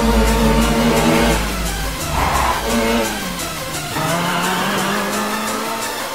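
A race-car engine revving, its pitch dropping away twice and then climbing again and holding, mixed with electronic dance music that keeps a steady fast beat.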